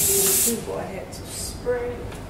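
Aerosol hair spray can spraying onto styled hair: one loud hiss that stops about half a second in, then a second, shorter and fainter spray a little later.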